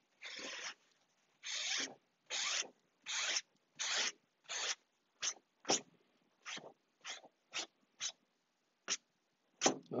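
Paper towel wiped in quick rubbing strokes across freshly glued covering fabric on a plywood panel, taking off the excess glue as it soaks into the fabric. About a dozen separate strokes: longer ones through the first half, then shorter, sharper ones.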